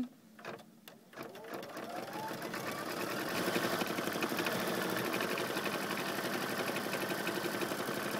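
Embroidery machine sewing the tack-down stitch that fastens appliqué fabric to the hooped stabilizer: a short rising whine as it speeds up about a second in, then a steady, rapid stitching rhythm.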